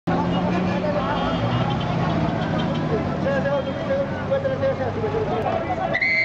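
Busy city street: minibus and car engines running at low speed, with a steady hum under the voices of people talking.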